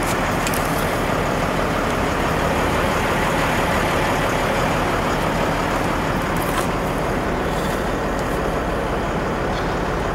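Steady, even rushing noise with a low hum underneath from the brine-making setup's water and pump, running while the hose is laid into the tank of rock salt.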